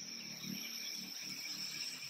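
Steady high-pitched chorus of insects, a continuous drone of several held tones.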